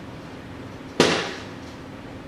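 A single hollow thud about a second in as a partly filled plastic water bottle, flipped, lands upright on the floor, then fades out.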